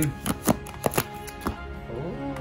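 A thick stack of printed paper tickets being flicked through with a thumb: about half a dozen sharp paper snaps over the first second and a half, with background music underneath.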